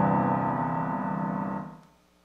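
Kawai ES8 digital piano's acoustic piano voice playing through its own built-in amplifier and speakers: the last notes of a passage ring out and die away to silence about a second and a half in.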